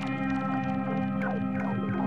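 Electronic synthesizer music: a steady held chord drone, with short notes that slide downward in pitch about twice a second.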